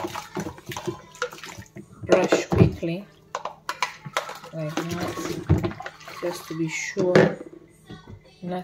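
Water splashing and sloshing in a plastic washing-up bowl as plastic baby bottles are scrubbed with a bottle brush and rinsed, with many short knocks and clicks of plastic being handled.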